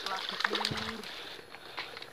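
A hooked ladyfish (payus) thrashing and splashing at the surface of the water on the line. A brief, flat-pitched hum of a voice comes about half a second in.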